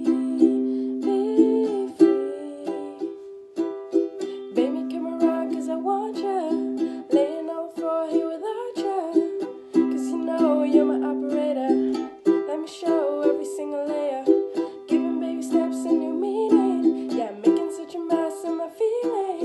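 A ukulele strummed in a steady rhythm, with a woman's voice singing the melody over the chords.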